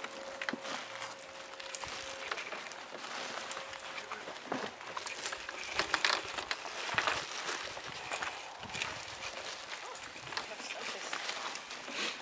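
Faint, indistinct voices with scattered clicks and knocks of handling, and a faint steady tone during the first two seconds.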